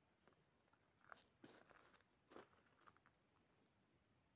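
Near silence, broken by a few faint crunches about a second and two seconds in.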